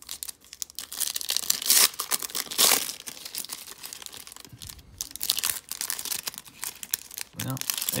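A foil trading-card pack wrapper being torn open and crinkled by hand: dense crackling, with two loudest sharp rips about two and three seconds in.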